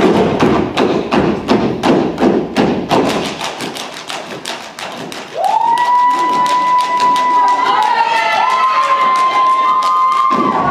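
Step team stomping feet and clapping hands in a rapid rhythm, the hits thinning out after about four seconds. About five seconds in, a long held high note starts, sliding up into pitch, holding steady and stepping up slightly near the end.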